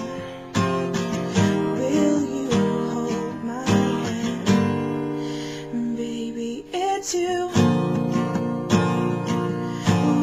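Acoustic guitar strummed in a steady rhythm, a chord struck about once a second.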